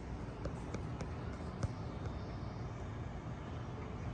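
Steady low background noise of a city at night heard from a high-rise window, with a few light clicks in the first couple of seconds.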